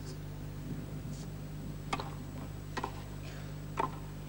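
Tennis rackets striking the ball during a rally: a sharp pop about two seconds in, a quick double knock a second later, and the loudest strike near the end, over a steady low broadcast hum.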